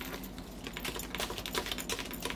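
Tarot cards being shuffled by hand: a quick, irregular run of light card clicks and flicks, busiest from about half a second in.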